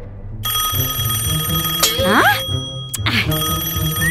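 A telephone ringing in two rings with a pause between, over background music with a steady beat. A short rising sound comes between the rings.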